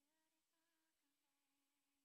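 Near silence, with only a very faint trace of a slow melodic tone, a few held notes.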